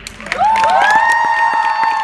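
Audience cheering and clapping as a dance solo ends: several high-pitched whoops slide up and are held from about half a second in, over scattered handclaps.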